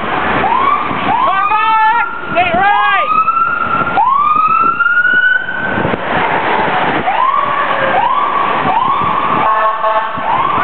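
A crowd of inline skaters whooping, one rising call after another, over the steady rolling of skate wheels on asphalt.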